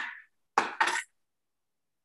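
Two brief clinks in quick succession about half a second in, as small painting tools are handled on the tabletop.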